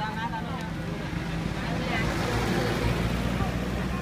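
Motor vehicle engine running close by, its noise swelling to a peak about two to three seconds in and easing off, over a steady low hum, with voices nearby.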